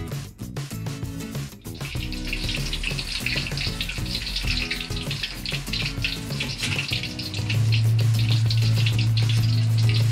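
Thick breaded pork cutlets deep-frying in hot oil, a steady bubbling sizzle that grows louder about two seconds in. This is the second fry of the tonkatsu. A loud steady low hum comes in after about seven and a half seconds, over background music.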